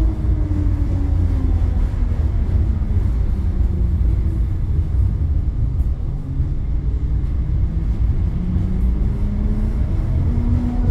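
Bozankaya tram running along its track: a steady low rumble with an electric motor whine that falls in pitch over the first few seconds as the tram slows, then rises again near the end as it picks up speed.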